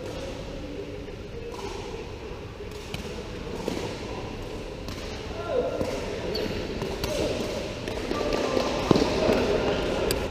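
A sepak takraw ball being kicked during a rally: a few sharp, hollow knocks, the loudest just before the end, with players' shouts and calls in between in a large hall.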